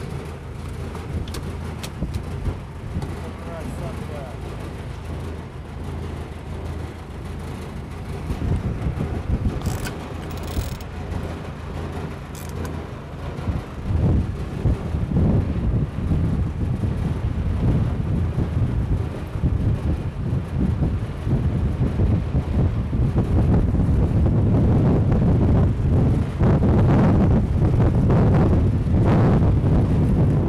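A boat's engine running steadily at sea, a low even hum under wind and water noise, growing louder and rougher about halfway through.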